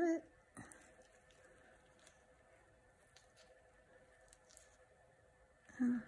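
Faint handling noise of nitrile-gloved fingers working the end of a dialysis tube into a closure clip: a few soft clicks and rustles over a faint steady hum.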